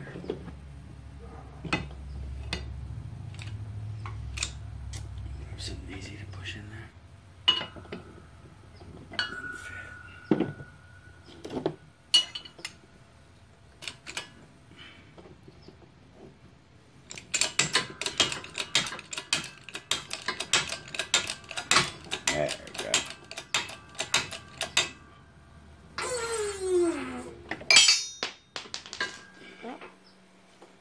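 Steel press cups, washers and a control arm clinking and knocking against a shop press plate and workbench: scattered clinks at first, then a long run of rapid metal-on-metal clatter, and a short scrape falling in pitch near the end.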